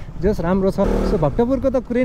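A man talking, with the steady noise of a motorcycle being ridden underneath.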